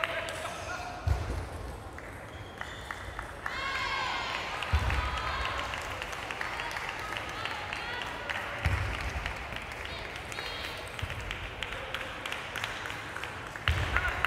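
Echoing sports-hall sound of a table tennis tournament: many short, sharp clicks of table tennis balls at play, with voices calling out at about four seconds in and a few dull thuds.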